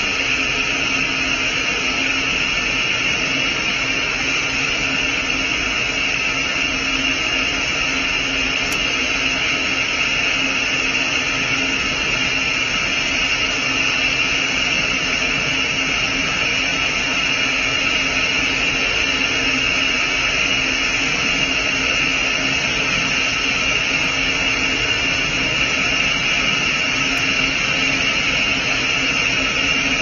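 Steady, even hissing rush from the burnt-out solid rocket booster as the CO2 quench vents through the motor and out of the nozzle, with a constant low hum underneath.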